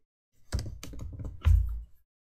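Typing on a computer keyboard: a quick run of keystrokes beginning about half a second in, with one heavier knock near the end.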